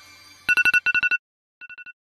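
Smartphone alarm beeping: quick electronic beeps in bursts of about four, starting about half a second in. The first two bursts are loud and the third is much fainter, fading away.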